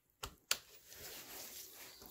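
A 10 N·m preset torque wrench clicking twice in quick succession, about a third of a second apart, as it reaches its set torque on a valve adjuster collar. Faint handling noise follows.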